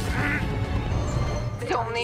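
TV series soundtrack: a low, steady music score with a brief strained vocal sound at the start, then dubbed dialogue beginning near the end.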